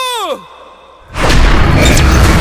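A voice holding a long high cry that drops in pitch and dies away in the first half second. After a short lull, a loud, dense noisy sound with heavy low rumble comes in about a second in and carries on.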